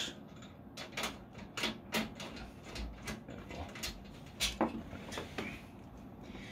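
Scattered light clicks and taps of hands working on a metal PC case, about a dozen at irregular intervals.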